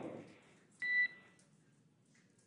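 A single short electronic beep on the radio link between mission control and the crew: one steady high tone lasting under half a second, about a second in.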